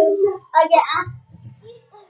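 A boy's voice: a drawn-out call held on one pitch, then a short high cry about half a second in, fading out near the end.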